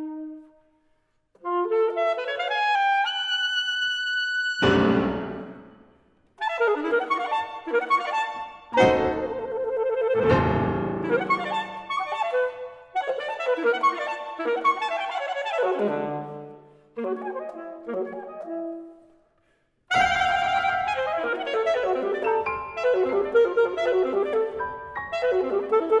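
Saxophone and piano duo playing a contemporary classical piece in short phrases, with held high saxophone notes and piano chords struck and left ringing. The music stops briefly twice, about a second in and again near the 19-second mark.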